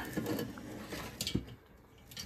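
Rustling and light knocking of an ATX power supply's bundle of sleeved output cables being lifted and moved about by hand, with a couple of small clicks a little over a second in.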